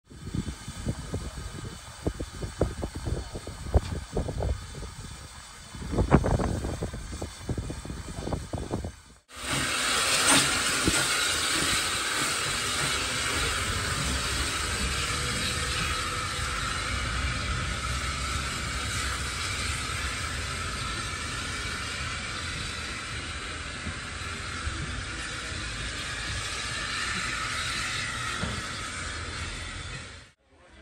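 Irregular knocks and clicks, loudest about six seconds in, then after a sudden cut a steady hiss of steam from a SECR O1 class steam locomotive.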